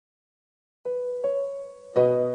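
Silence, then a little under a second in, soft piano notes begin the intro of a worship song: two single notes, one after the other.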